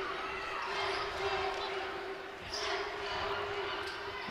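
A basketball bouncing on a hardwood court during live play, under the murmur of an arena crowd and a steady hum.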